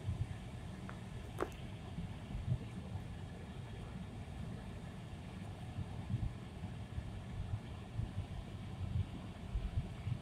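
Low, steady rumble of a moving car heard from inside the cabin, with occasional low bumps from the road.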